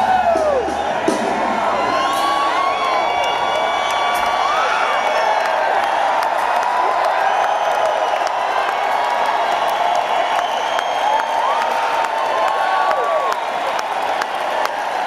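Large arena crowd cheering, shouting and whooping, with scattered claps, while the band's playing has dropped away.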